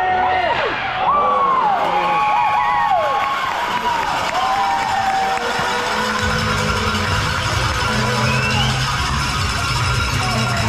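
Shouting and cheering voices in an ice hockey arena, then music with a low bass line comes in about six seconds in.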